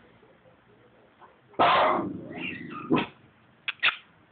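Lhasa Apso dog vocalizing: one loud, rough, drawn-out sound starting about one and a half seconds in and lasting over a second, then two short sharp sounds near the end.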